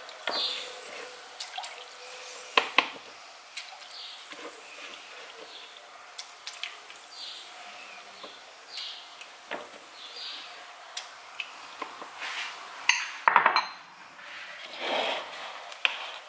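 Scattered light clinks and taps of a pastry brush against a ceramic bowl as it is dipped in orangeade and dabbed onto a sponge cake, with soft drips of the liquid. About 13 s in comes a louder, quick clatter of a utensil against a bowl.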